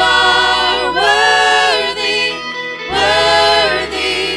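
Live church worship band: several singers holding long sung notes together, gliding between them, over electric guitars, keyboard and a steady bass.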